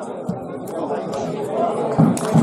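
Several people's voices talking and calling out over one another, indistinct, growing a little louder towards the end.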